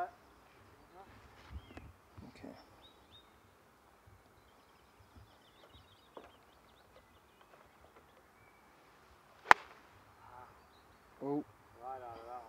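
A golf club (a wedge) striking the ball on a short pitch shot: one sharp, crisp click about nine and a half seconds in, the loudest sound. Faint birdsong chirps quietly earlier on.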